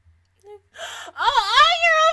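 A woman's wordless, high-pitched excited squeal, starting with a breathy gasp about a second in and gliding down and up in pitch.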